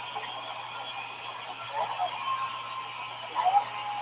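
Quiet stretch of a call line: faint, indistinct voices around the middle and near the end over a low steady hum and hiss.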